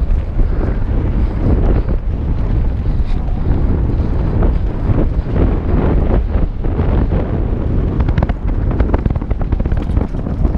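Wind rushing over a helmet-mounted action camera's microphone on a fast mountain-bike descent, with the tyres rolling on dirt singletrack and frequent short knocks and rattles from the bike over bumps.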